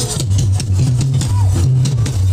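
Loud amplified live fuji band music: a stepping bass line and steady drumming, with only snatches of the singer's voice.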